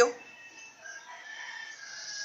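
A rooster crowing faintly, one drawn-out call.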